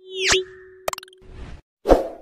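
Cartoon-style sound effects for an animated logo. A pop with a quick upward sweep comes first, over a steady tone that holds for about a second. Sharp clicks follow about a second in, and a thump comes near the end.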